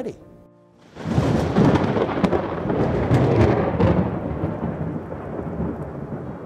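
Thunder rumbling over rain, starting suddenly about a second in, loudest early on with a few sharp cracks, then slowly dying away.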